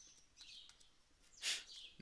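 Faint high chirps of a bird in the background, with a short hiss about one and a half seconds in.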